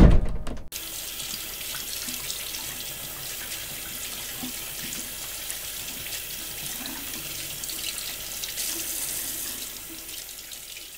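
A loud low thump right at the start that cuts off abruptly, then a bathroom faucet running steadily into the sink as hands are washed under the stream.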